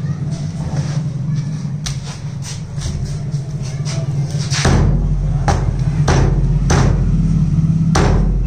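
Cleaver chopping raw chicken on a wooden log chopping block: light knocks and clicks at first, then about four heavy chops in the second half, roughly every half second.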